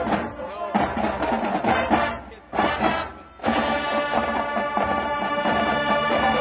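Marching band playing: percussion hits with two short breaks in the first few seconds, then the brass come in and hold a sustained chord.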